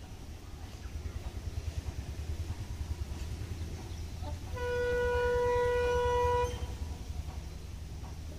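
Horn of the approaching Maitree Express locomotive sounding one steady blast of about two seconds, a little past halfway, over a low background rumble.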